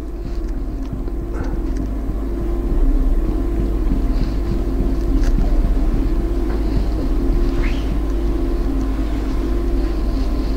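A steady low hum from a running machine or electrical supply, unchanging throughout, with a few faint brief higher sounds over it.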